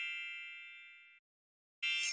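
A bright, ringing chime sound effect dying away over about a second, then a brief silence and the start of a second, higher shimmering chime near the end.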